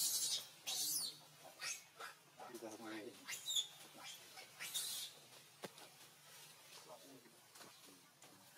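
Birds chirping: short high calls scattered through, strongest at the start and again about five seconds in, with a brief wavering voice-like call at around two and a half seconds.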